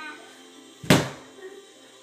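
A single loud thump a little under a second in, dying away quickly.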